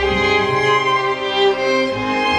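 Solo violin and viola with a string chamber ensemble playing held, bowed notes. A new chord begins at the start after a brief lull.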